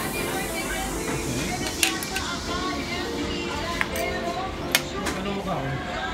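Background music and voices, with three short sharp clinks of a metal spoon against a ceramic soup bowl.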